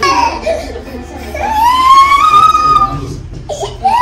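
Toddler crying: a short falling wail at the start, then one long high wail that rises and holds before breaking off, with sobbing sounds near the end.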